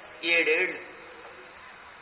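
A man's voice speaks a short phrase in the first second, then pauses over a faint, steady, high-pitched background tone.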